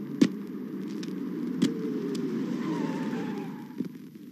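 Sharp knocks of a machete chopping into a tender coconut, the loudest about a quarter second in and another about a second and a half in, over a steady hum of street traffic.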